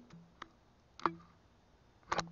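Two faint clicks about half a second apart, the second one clearer, over a low steady hum.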